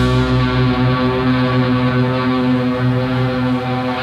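Live instrumental rock band holding one sustained, droning chord on guitar, bass and keys with no drums or cymbals; the sound changes abruptly at the very end as a new section starts.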